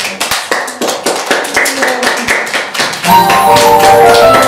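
A group of small children clapping their hands, uneven and quick. About three seconds in, music starts suddenly and louder, with held melody notes over a beat.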